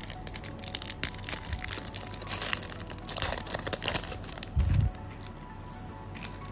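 Foil trading-card pack crinkling and tearing as it is peeled open by hand, a dense crackle that stops about four seconds in, followed by a short low thump.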